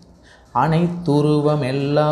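A man chanting a verse in a long, sustained melodic voice, beginning about half a second in after a brief pause.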